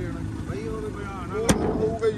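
A single sharp knock about one and a half seconds in, from hands handling the bent bonnet and windscreen cowl of a crash-damaged SUV, over faint men's voices.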